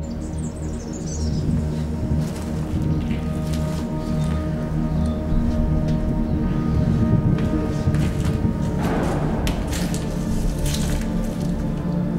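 Background music of sustained, held tones with a dark, eerie character, with a few faint clicks and knocks over it.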